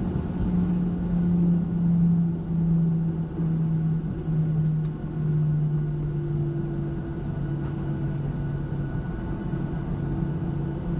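Jet airliner cabin noise beside the wing engine as the plane rolls along the ground after landing: a steady engine drone with a low wavering hum and rumble, a little louder in the first few seconds.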